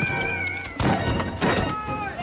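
Animated film soundtrack: a high, drawn-out cry that tails off, then two heavy thuds about a second and a second and a half in, over dramatic background music.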